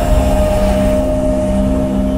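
Cinematic logo-intro sound: a deep, loud rumble under several held, droning tones.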